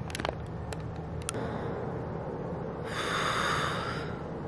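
A woman crying without words: a few small wet clicks of sniffling and lips, then a long, noisy sniff through the nose starting about three seconds in.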